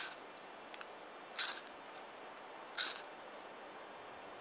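A ferrocerium rod scraped with its steel striker three times, about a second and a half apart, each a short rasping scrape that throws sparks onto damp old man's beard lichen tinder.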